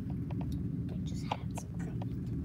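A person whispering softly, with scattered light clicks over a steady low hum.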